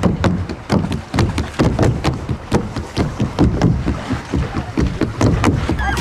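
Kayak outing with many irregular sharp taps and knocks, several a second, over a low rumble.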